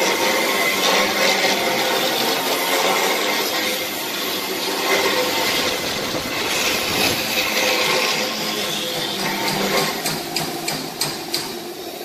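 Workshop tool noise from machinery being serviced: steady clattering and scraping, with a quick run of sharp knocks near the end.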